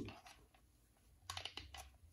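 A few faint, quick clicks in the second half, from a multimeter's test probe being handled and repositioned.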